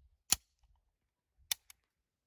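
Sharp metallic clicks from handling a CZ 75B pistol with its magazine out: two loud clicks about a second apart, the second followed closely by a fainter one.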